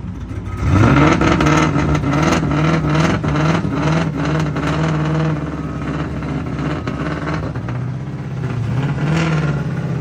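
Ford Mustang engine revving up sharply about a second in and held at high revs, its pitch wavering, while the rear tyres spin in a smoky burnout.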